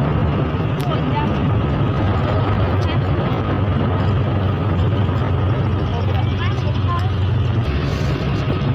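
Small motorbike engine running steadily at cruising speed, a constant low drone under wind and road noise on the microphone, heard from the rider's seat.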